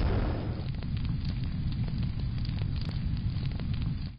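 Fire crackling sound effect: a steady low rush dotted with many small crackles and pops.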